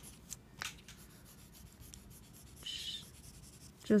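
Mechanical pencil lead drawing lines on paper: a couple of short scratchy strokes in the first second, then a longer stroke a little before three seconds in.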